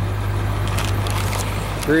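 Steady low hum of the school bus's International 7.3-litre turbo diesel idling, heard from beneath the bus.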